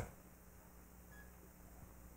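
Near silence: room tone with a steady low electrical hum, and one faint, very short high beep about a second in.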